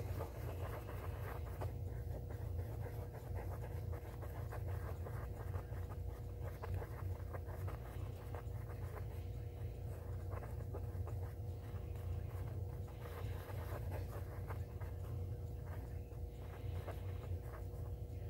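Wooden stick stirring and scraping JB Weld two-part epoxy on a piece of cardboard: faint, irregular scratching. A steady low hum sits under it.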